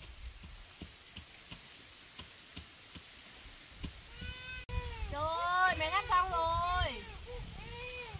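A high-pitched voice giving a run of sliding, wavering cries, starting about halfway through and loudest near the three-quarter mark. Faint light ticks come before it.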